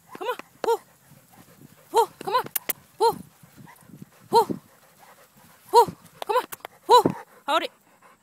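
Husky giving short whining yelps while straining to drag a weighted load, about ten calls in irregular groups, each rising and falling in pitch. A few sharp clicks sound between the calls.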